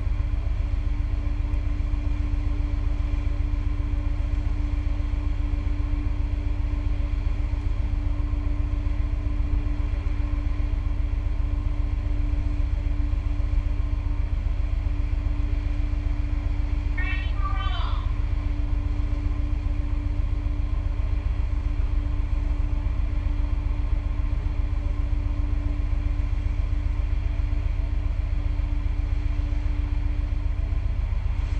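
Steady low rumble with a constant mechanical hum, the shipboard machinery noise of an aircraft carrier, unchanging throughout.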